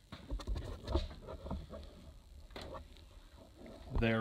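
Scattered light clicks and knocks, mostly in the first second and once more around two and a half seconds in, from the spark plug extractor and socket being handled while the broken plug is worked out of the cylinder head.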